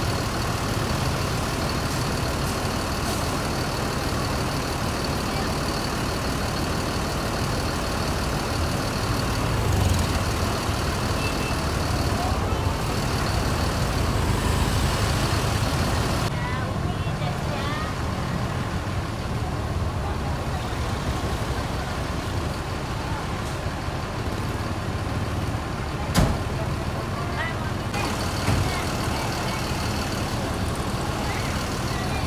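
Street traffic close up: the low, steady run of large buses' diesel engines idling, with motorcycles passing close by and voices in the background. A single sharp click comes about 26 seconds in.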